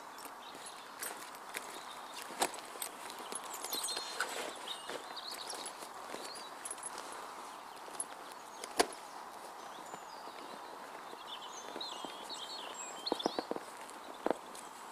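Heavy canvas swag with its built-in mattress being rolled up by hand on grass: rustling and scraping of the canvas, with scattered knocks. The sharpest knock comes about nine seconds in, and a quick run of them comes near the end.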